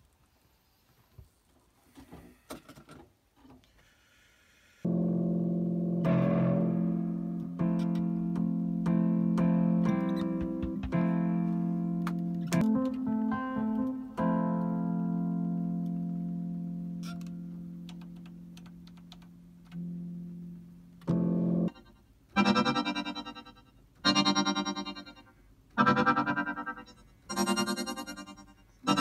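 Studio keyboard instruments. After a few faint clicks, a sustained chord comes in about five seconds in, moves through a few notes and slowly fades away. Near the end a synthesizer plays a repeating note about once a second, each one dying away quickly.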